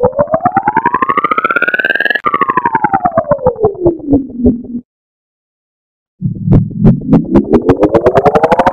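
Slowed, pitch-shifted Pepsi logo animation sound effect: a buzzy electronic tone with rapid pulses glides up for about two seconds, then back down until it cuts off about five seconds in. After a second or so of silence, a chord-like layered version of the tone begins rising again.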